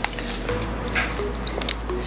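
Plastic candy bag being handled: a few light crinkles and clicks, with small squishy sounds from the gummy candy.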